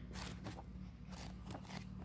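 Faint rustling of paper pages being turned by hand in a book, a few soft flicks and brushes.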